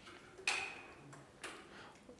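Chalk striking and scraping on a blackboard: two short, sharp strokes about a second apart, the first the louder.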